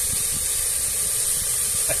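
Steady sizzling hiss of diced onion, garlic and green pepper frying in olive oil in an aluminium pressure-cooker pan.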